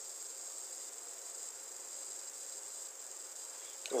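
A faint, steady, high-pitched background drone with no other sound in a pause between spoken words.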